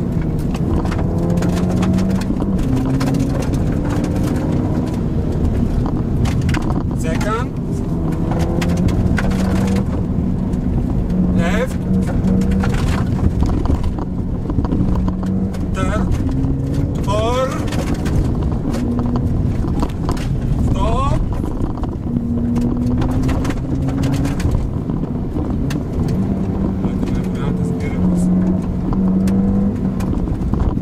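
Ford Fiesta ST's turbocharged 1.6-litre four-cylinder engine pulling along a gravel road, heard from inside the cabin. The engine note climbs and drops back at each gear change over a steady rumble of tyres on gravel. A few short rising whines come through now and then.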